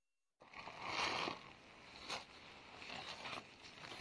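After a brief dead silence at the start, rustling and crackling of dry leaves and brush being handled close to the microphone, with a few sharp snaps.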